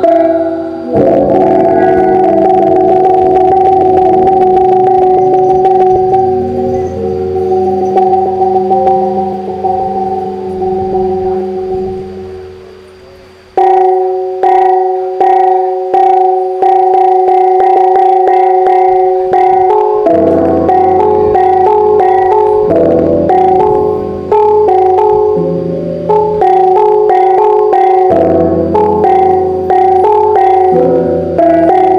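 A Mường gong ensemble: hand-held bronze bossed gongs of different pitches, struck with cloth-padded beaters, their tones ringing and overlapping. The ringing dies away about twelve seconds in. About a second later a regular pattern of strikes begins, with several gongs sounding in turn.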